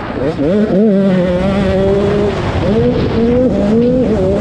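85cc two-stroke motocross bike engine at full throttle, revving up through the gears: the pitch climbs, holds high, drops at a shift just past two seconds, then climbs again with another quick shift near the end. Wind rushes over the helmet-mounted microphone.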